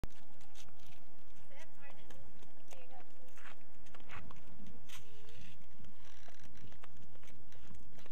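Flip-flops slapping and feet stepping on asphalt in an irregular run of clicks, with a few short high vocal sounds from a small child.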